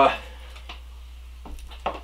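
A few faint clicks and light knocks as a spinning rod and reel are handled and moved, over a low steady hum.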